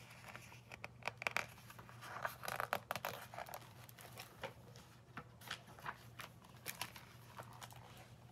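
Pages of a paper picture book being handled and turned: faint rustling with a scatter of short clicks and crinkles, busiest in the first few seconds.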